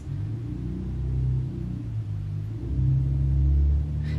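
Background music: a low, steady ambient drone whose bass notes shift twice and swell slightly near the end.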